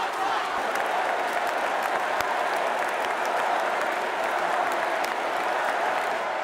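Large arena crowd chanting and shouting over one another, with scattered clapping.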